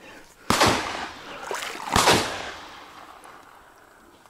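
Two shotgun shots at ducks, about a second and a half apart, each followed by a long trailing echo.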